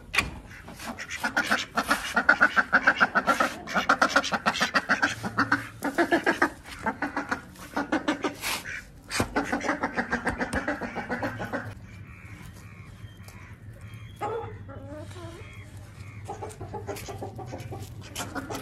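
Hens clucking in long, rapid runs of calls for most of the first ten seconds or so. Near the end they fall to a few quieter, scattered calls.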